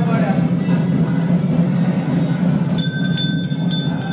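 A steady low hum runs underneath. Near the end a temple hand bell starts ringing rapidly, about four strokes a second.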